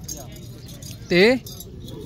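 Outdoor livestock-market background murmur with faint metallic jingling, and a man's single short spoken word about a second in.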